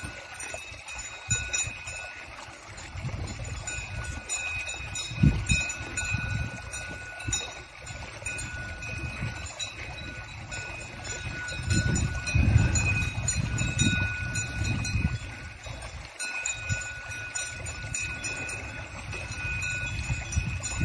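Cowbells on grazing cattle ringing on and off as the animals move, with gusts of wind rumbling on the microphone.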